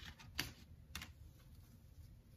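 Tarot cards tapped and laid down on a table spread: two short, faint clicks about half a second apart, the second near the middle.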